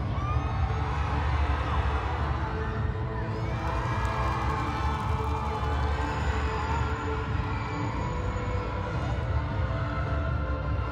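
Pageant stage music with a heavy, throbbing bass played loudly over venue speakers, while a live audience cheers and screams over it. The cheering swells and fades, strongest in the first half.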